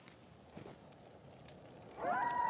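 Near silence: room tone with a few faint ticks, one slightly louder about half a second in.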